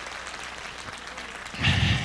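Congregation clapping, a steady haze of applause; about a second and a half in, a louder sound joins it.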